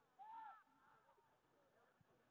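Near silence with a faint, distant shouted call from out on the field about a quarter of a second in, its pitch rising then falling, and weaker calls after it.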